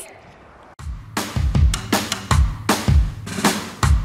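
Background music with a steady drum-kit beat, bass drum and snare, starting about a second in after a brief lull.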